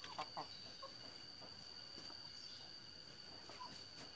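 Faint chicken clucks, a few short calls mostly in the first second and again near the end, over a steady high-pitched tone.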